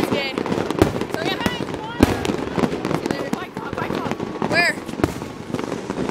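A few sharp firecracker pops, the loudest about two seconds in, over people talking and chattering.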